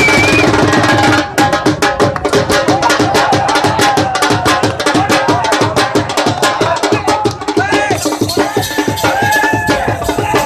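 Music with fast, dense drum beats, with voices over it.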